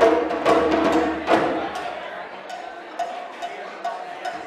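African hand-drum ensemble of djembes and standing drums playing its last loud strokes, the final one about a second and a half in. Then the drumming stops and only a few scattered light taps and clicks are left.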